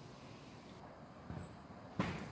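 Quiet outdoor background: a faint, even hiss with no distinct source, and one brief soft sound about one and a half seconds in.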